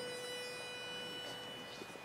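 A barbershop pitch pipe sounding one steady, reedy note for about two seconds before the quartet sings, giving the starting pitch.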